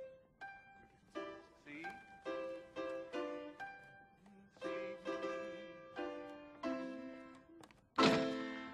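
Keyboard instrument playing a simple march slowly and haltingly, one chord or note at a time with uneven pauses between them, as an amateur player sight-reads and practises the piece.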